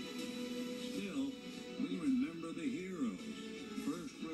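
Music with a voice over it, played from a television's speakers and picked up in the room: steady held notes under a voice whose pitch rises and falls in arcs through the middle.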